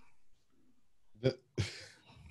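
A man drinking: a short throaty gulp about a second in, then a breathy exhale right after swallowing.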